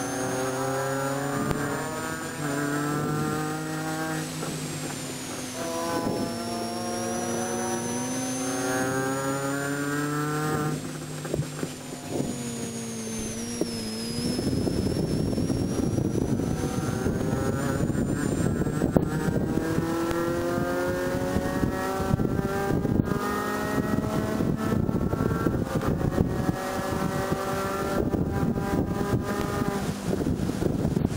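Inside the cabin of a 2006 Mini Cooper S JCW race car, its supercharged four-cylinder engine rises and falls in pitch through the corners. About halfway through it pulls hard up through the revs, with a shift into fourth, as a loud rush of wind and road noise builds with speed.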